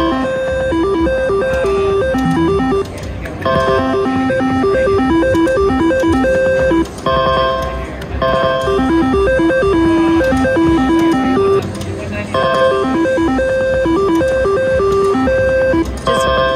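A three-reel slot machine's electronic spin melody: a run of short stepped beeping tones that plays while the reels spin and starts over with each new spin, about four times, with clicks as the reels stop.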